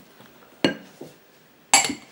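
A spatula knocking against a glass mixing bowl while folding batter by hand: a sharp clink a little over half a second in, a fainter one about a second in, and a louder clink near the end.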